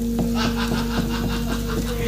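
Soft Javanese gamelan accompaniment holding one steady note, with light taps several times a second.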